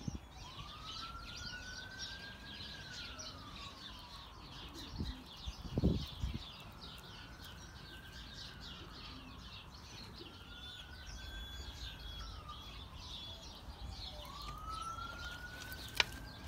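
A faint siren wailing, its pitch rising and falling slowly, about four swells in all, over many small birds chirping. A short thump about six seconds in.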